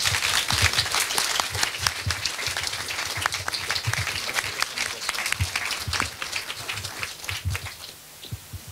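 Audience applauding, a dense patter of clapping that thins and dies away near the end.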